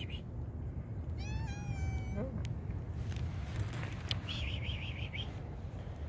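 A cat meows once, about a second in: a single drawn-out meow lasting about a second that ends with a quick drop in pitch. A steady low rumble runs underneath, and a brief warbling high sound comes about four seconds in.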